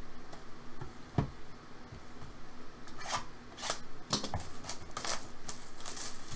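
Small cardboard box being handled and opened: a single knock about a second in, then from about three seconds in a run of short, papery scrapes and rustles as the box is tipped and its lid worked open.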